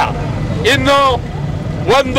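A man speaking loudly in Kannada, in short emphatic phrases with a pause in the middle, over a steady low rumble of an engine running.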